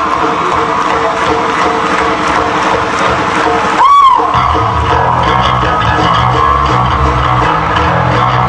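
Live rock band with a cheering crowd: sustained guitar and keyboard tones at first, then about halfway a loud high whoop that falls in pitch, after which the bass and drums come in heavily.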